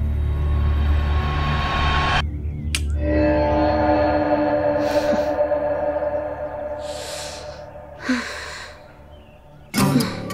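Background score of slow, sustained notes that drops out briefly a little after two seconds in, then returns with a few airy swells and fades lower near the end.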